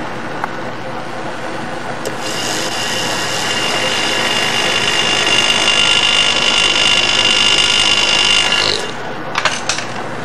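Small benchtop vortex mixer whirring as a glass tube is held on its rubber cup. It starts about two seconds in, grows a little louder and cuts off abruptly near the end, followed by a couple of short glass clinks.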